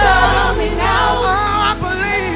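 Gospel praise team singing together live into microphones, voices wavering and sliding in pitch over a held low bass note.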